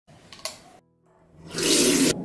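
A wall light switch clicks about half a second in; then water from a metal tap starts running into a sink, building to a loud gush near the end.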